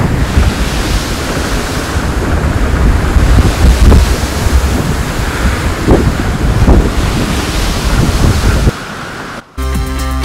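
Strong wind buffeting the microphone over the rushing of a rough, breaking sea. About nine seconds in, it cuts off abruptly and music begins.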